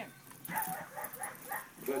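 15-month-old Belgian Malinois giving a quick string of short, high-pitched yips and whines, about five a second, as it charges and takes the grip on a decoy in a bite suit.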